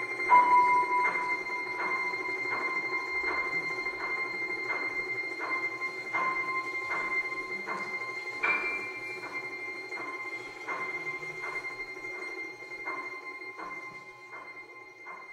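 Domra and piano playing slow contemporary music: an even pulse of plucked notes, about three every two seconds, over sustained high ringing tones. One stronger accent comes a little past halfway, and the music gradually grows quieter toward the end.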